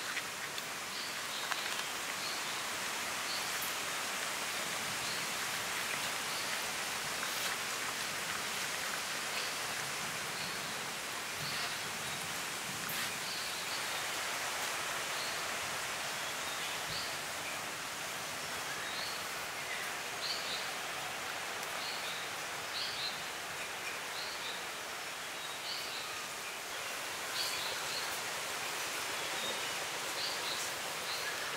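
Outdoor woodland ambience: a steady hiss, with a short high chirp repeating every second or two.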